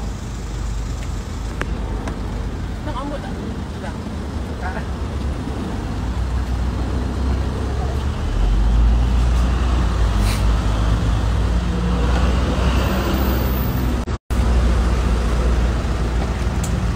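Low, steady rumble of road traffic on a city street, growing louder about halfway through.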